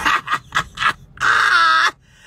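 A woman laughing hard: a few short bursts of laughter, then a long, loud, high-pitched shriek of laughter near the end.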